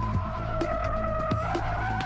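Chevrolet Camaro tires squealing in a long, continuous screech during a hard evasive-driving manoeuvre, the squeal shifting higher in pitch about three-quarters of the way through. Music plays underneath.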